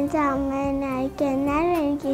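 A young girl singing two long held notes, the second rising and falling in pitch near the end.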